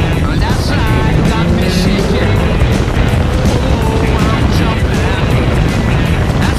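Rock song with a male singing voice, over the steady running of a car's engine and road noise.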